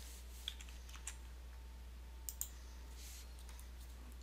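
A few faint, sparse clicks of a computer keyboard and mouse as a search term is typed and submitted, over a low steady hum.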